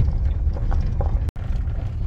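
Low, steady rumble of a vehicle heard from inside the cabin as it rolls slowly along a dirt driveway, with a few light clicks. The sound drops out for an instant a little over halfway through, at an edit.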